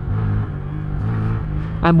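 Honda Grom's 125 cc single-cylinder engine in first gear, with the throttle snapped wide open and shut, so the engine note steps up and down a few times.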